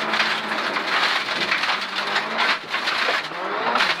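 Rally car driven hard on a loose gravel road, heard from inside the cabin: the engine's note under a dense hiss and rattle of gravel thrown against the underbody and wheel arches. The engine note shifts near the end.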